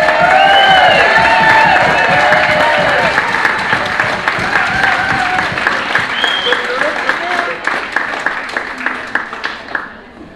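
Audience clapping and cheering, with whoops and shouts over the applause in the first few seconds; the clapping thins out and fades near the end.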